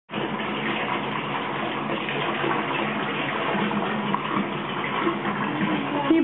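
Water running steadily from a tap into a bathtub.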